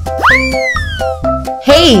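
A cartoon 'boing' sound effect, one tone that shoots up and then slides slowly down, as the answer letter flies into place, over bouncy children's background music.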